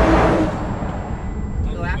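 A loud rushing whoosh of a vehicle at speed, strongest at the start and fading over about a second, over the steady low rumble of a van's road noise.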